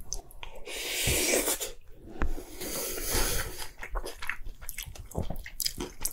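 Close-miked chewing of a mouthful of rice mixed with the innards scraped from a soy-sauce-marinated crab's shell, with many small wet clicks and smacks.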